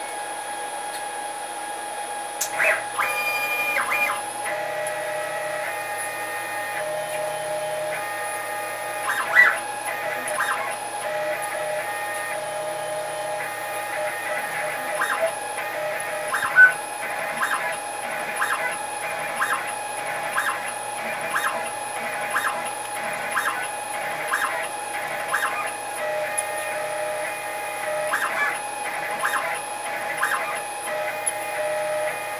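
A 6040 CNC router running a job: a steady machine whine throughout, with the stepper motors singing in stepped tones that change pitch and start and stop as the axes move, beginning about two and a half seconds in. Through the middle there are short ticks about once a second.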